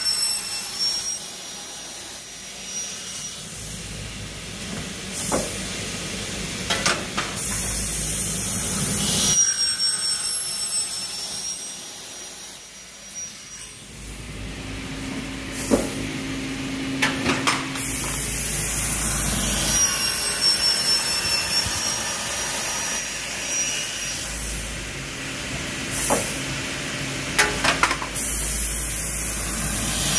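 Semi-automatic pneumatic aluminium cutting saw with a 450 mm blade cutting through a stack of aluminium profiles in repeated cycles, a high ringing whine during each cut, roughly every ten seconds. Short hisses of compressed air from the pneumatic clamps and feed come between the cuts, over the hum of the running motor.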